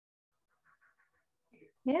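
Near quiet with a few faint, short, indistinct sounds, then a woman's voice asking "Yes?" near the end.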